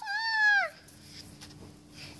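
A child's voice ending a long shout with a falling wail that dies away in under a second, followed by a faint steady hum.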